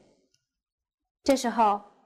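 Near silence for about a second, then a woman's voice speaking briefly, a word or two, fading out before the end.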